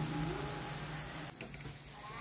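Quiet room background: a low steady hum with faint distant voices, dropping off abruptly about a second and a half in.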